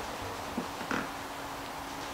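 A couple of faint, short sounds as a paper towel grips and peels the thin membrane off the bone side of a rack of baby back ribs, over a steady low hum.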